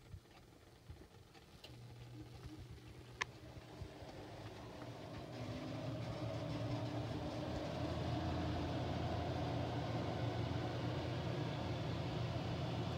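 A steady low mechanical hum, like a motor running. It fades in about two seconds in, grows louder over the next several seconds and then holds steady. A single sharp click comes about three seconds in.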